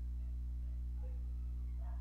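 Steady low electrical hum with a faint, brief sound about halfway through.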